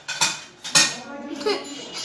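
Metal wound-dressing instruments clinking against metal: two sharp clinks in the first second, then softer rattling.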